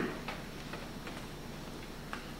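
Sparse, irregular light clicks from a laptop being operated, a few per second, over a steady low room hum.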